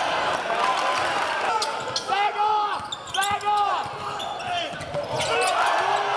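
Live basketball game in a gym: the ball bouncing on the hardwood court, with a run of short sneaker squeaks between about two and four seconds in, over a steady murmur of crowd and player voices.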